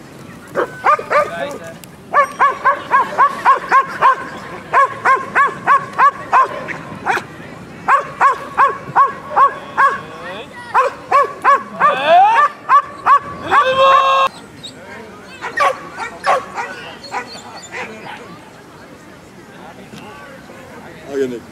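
A police dog barking rapidly and steadily, about three to four barks a second, at a decoy in a bite suit who stands still: the dog guarding and barking at him as trained. The barking stops about fourteen seconds in, after a louder drawn-out call.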